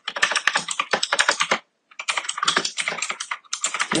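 Computer keyboard typing: two quick runs of key clicks with a short pause about a second and a half in.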